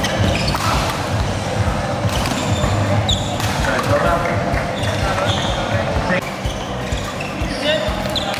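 Badminton play in a large hall: sharp cracks of rackets striking the shuttlecock and short squeaks of shoes on the court floor, over spectators talking.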